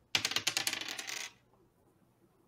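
Dice being rolled, clattering onto a hard surface in a rapid run of clicks for a little over a second.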